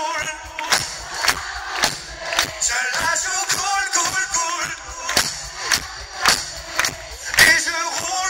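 Live pop band playing through a concert PA, with a steady drum beat about twice a second, vocals, and a crowd singing and shouting along.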